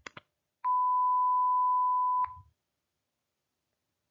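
A single steady electronic beep, one pure high tone lasting about a second and a half, switching on and off abruptly. It is the cue tone that marks the break between segments of the interpreting dialogue.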